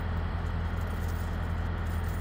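Steady low hum of idling semi-truck diesel engines, unchanging.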